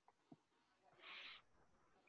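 Near silence, with one faint, brief hiss about a second in.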